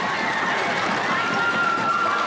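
Crowd chatter: many children's and spectators' voices talking at once, with a few high-pitched voices standing out.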